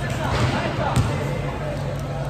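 A basketball bouncing on the court floor, one sharp thump about a second in, over background voices.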